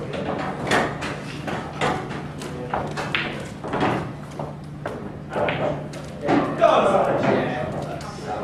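Indistinct voices chattering in a large hall, with scattered short knocks and clicks throughout.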